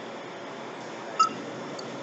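Steady workshop background noise with one sharp, short metallic clink about a second in, from a hand tool striking the truck wheel's hub hardware.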